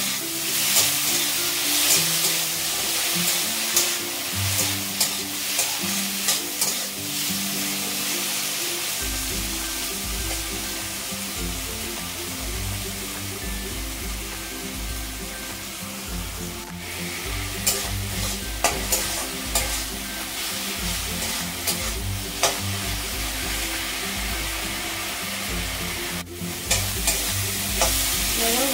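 Chopped tomatoes and spices frying in hot oil in a metal kadhai: a steady sizzle, with a steel spatula stirring and scraping against the pan in clusters of clicks near the start, in the middle and near the end.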